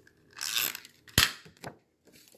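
Paper rustling as a stamped sheet of patterned paper is handled and pressed on a grid mat, then a sharp tap a little over a second in and a fainter one just after, as the paper or card is set down on the table.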